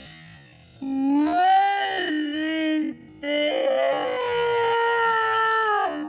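A voice holding two long howling notes with a short break between them. The first note is lower and wavering; the second is higher and held, then slides down as it ends.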